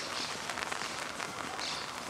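Rain pattering steadily, with two brief faint high-pitched sounds about a second and a half apart.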